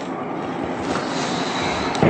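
Chalk rubbing against a blackboard as a circle is drawn, a steady scratchy noise.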